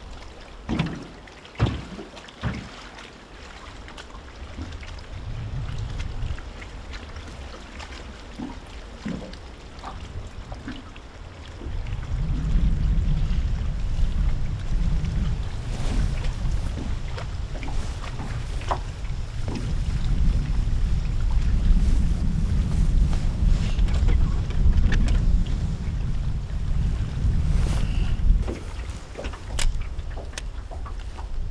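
Wind buffeting the microphone in uneven low gusts, strongest through the second half. A few light clicks and taps in the first few seconds.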